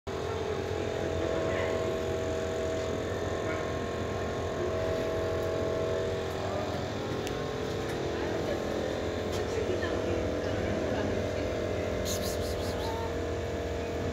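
A steady mechanical hum with a low rumble underneath, and a few light clicks near the end.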